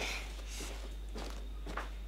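Soft footsteps of a person walking away across a room, about two steps a second.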